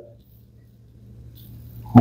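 A pause in a man's speech in a small room: faint room tone with a steady low hum. His voice tails off at the start and resumes at the very end.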